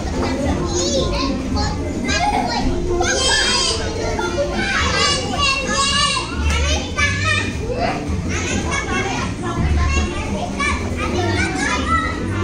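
Several young children's voices at play: overlapping chatter and high-pitched shouts.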